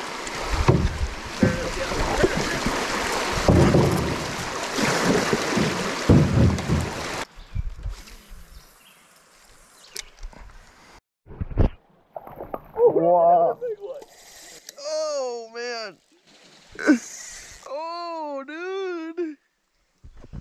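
Canoe running a shallow rocky riffle: rushing river water with a few low knocks against the hull, cutting off about seven seconds in. Later come several high, arching squeals from a person, in a voice likened to a little schoolgirl.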